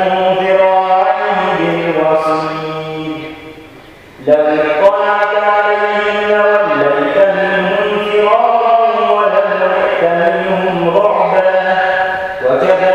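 A male reciter chanting the Quran in Arabic in a slow, melodic style, holding long notes. One phrase trails off about three seconds in, and after a brief breath a new phrase begins and carries through.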